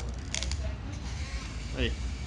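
Clockwork of a small plastic wind-up Megatron figure (McDonald's Happy Meal Transformers toy) being wound by hand at the back, giving a brief burst of ratcheting clicks about a third of a second in.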